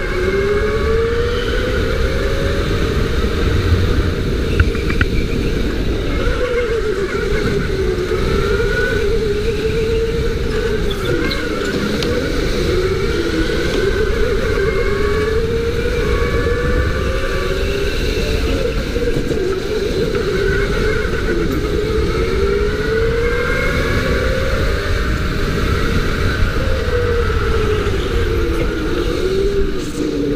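Go-kart motors running at speed, their pitch climbing and dropping again every few seconds as the karts speed up and slow down, with more than one kart's tone overlapping at times.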